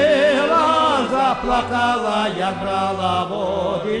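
Lemko folk song: a singing voice with a wide vibrato and ornamented, winding melodic runs, over a low bass note that sounds in long repeated pulses.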